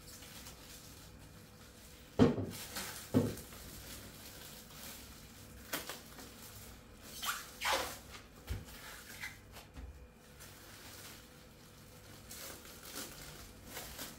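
Clear plastic film crinkling and rustling as a log of biscuit mixture is wrapped and shaped by hand, with two sharp knocks about a second apart a couple of seconds in.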